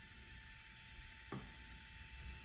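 Faint, steady whine from a Canon IVY Mini 2 ZINK photo printer as it starts a print, with one soft click about a second and a half in.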